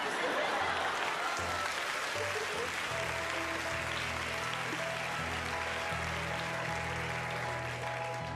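Studio audience applauding and laughing, over background music with sustained bass notes that change every second or so.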